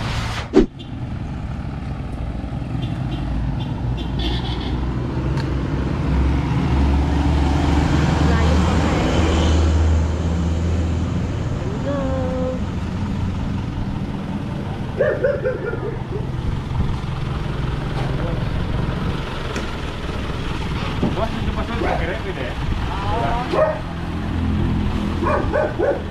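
A single sharp metal clatter about half a second in as corrugated roofing sheets are loaded onto a truck, then a small truck's engine running with road noise, louder for a few seconds around the middle.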